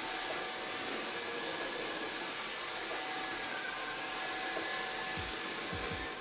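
Xiaomi TruClean W10 Ultra cordless wet-dry vacuum running steadily: an even rush of suction with a faint high whine over it.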